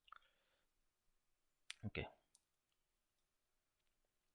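Near silence broken by a few faint computer mouse clicks, one right at the start and another just after two seconds. A single spoken "ok" about two seconds in is the loudest sound.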